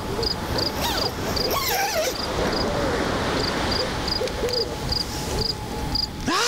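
Night-time chirping of an insect, short high chirps in an even rhythm of about three a second with a brief pause near the middle, over a steady hiss, with faint wavering tones lower down.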